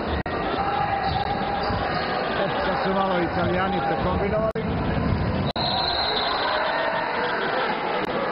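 Basketball game sound in a large hall: a ball being dribbled on the hardwood court under steady crowd noise, with voices calling out about halfway through. The sound drops out for an instant a few times.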